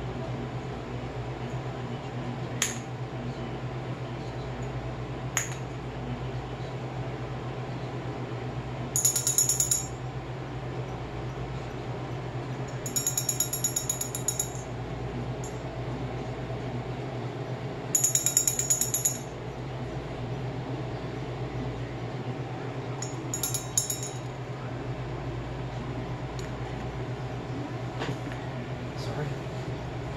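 A cockatoo tapping and rattling a small metal bell held in its beak: two single sharp clicks, then four bursts of rapid metallic clinking, each about a second long and a few seconds apart. A steady low hum runs underneath.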